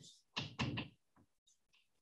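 Chalk knocking on a blackboard as someone writes: two short knocks in the first second, then a few faint taps.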